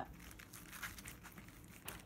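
Faint crinkling of paper and soft handling sounds as a hand presses and rubs seasoning into raw lamb chops on a paper-lined metal sheet pan, with a few light ticks and a sharper click near the end.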